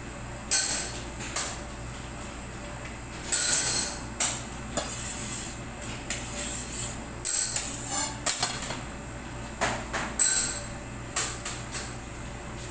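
Irregular clinks, knocks and scrapes of utensils and cake-decorating tools on a work bench, about a dozen short sharp sounds, over a steady low hum.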